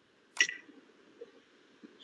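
A single sharp computer-mouse click about half a second in, with a brief ring, followed by a couple of faint ticks.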